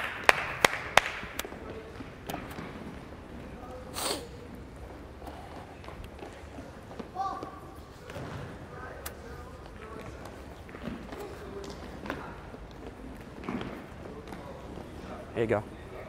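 Scattered thuds of soccer balls being kicked, passed and bouncing on a hardwood gym floor, several in quick succession in the first second, with sneaker footsteps and faint children's voices in the echoing gymnasium.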